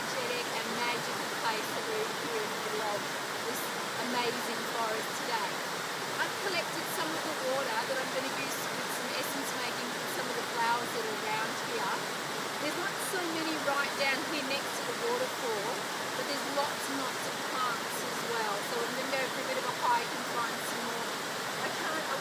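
Steady rush of a waterfall and cascades pouring over smooth rock, with scattered short gurgles on top; a very noisy, unbroken water sound.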